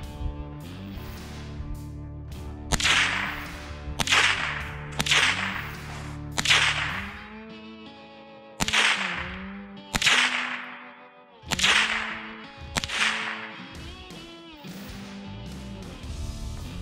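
Armscor M1600 blowback .22 LR rifle firing about nine single shots, one to two seconds apart. Each is a sharp crack with a short echo trailing off.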